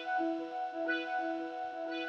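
Ableton Operator synth playing its 'Brassy Analog' brass patch, driven by the PolyArp arpeggiator: steady held notes, with a few fresh notes starting over them.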